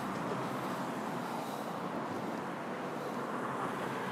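Steady street traffic noise from passing cars, an even hum with no separate events.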